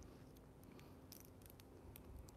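Near silence: room tone, with a few faint ticks about midway through.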